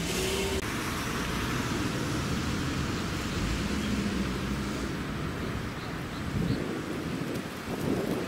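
Road traffic passing on a street, a steady noise with wind on the microphone.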